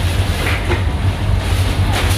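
Several small motorcycle engines running close by, a loud steady low rumble.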